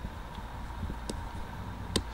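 Low, steady electrical hum from a variac and the Mohawk 10 HF linear amplifier's power transformer, energized at about 25 volts on the variac and drawing only about 11 watts. Two faint clicks come about a second in and near the end.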